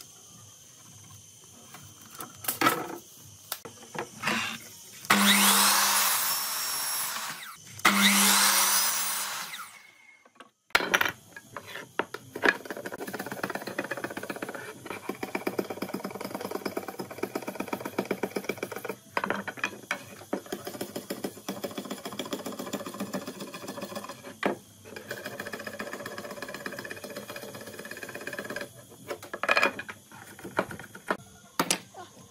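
Electric sliding miter saw run twice, each time a couple of seconds of motor and blade cutting through wood. Then a long run of quick, repeated scraping strokes: a knife blade scraping along a green bamboo pole.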